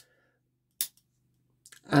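A single sharp click about a second in: a tool of a Victorinox Explorer Swiss Army knife snapping against its backspring as it is handled.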